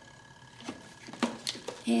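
Mostly quiet, with a few faint clicks from a one-handed bar clamp being squeezed tighter on a wooden bending jig; a woman's voice starts near the end.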